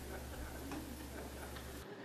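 Faint room noise with a steady low electrical hum and a couple of faint clicks; the hum cuts off suddenly near the end.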